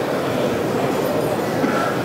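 Steady background din of a large exhibition hall: an even, low rumble with no distinct voice or event, picked up by the speaker's microphone.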